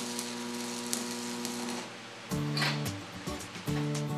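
Electric arc welding: a steady crackling sizzle over a constant electrical hum. About two seconds in it stops and music with changing notes comes in.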